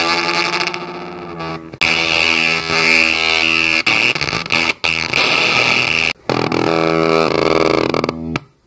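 Rosewater fuzz pedal with both its fuzz and its feedback loop engaged, oscillating into a thick distorted, noisy drone. A loud high whistling tone holds through the middle, the pitch bends near the end, and the sound cuts out abruptly a few times.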